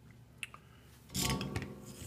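Soldering iron tip being wiped clean: a couple of small clicks, then a scraping rub of about half a second just after the first second.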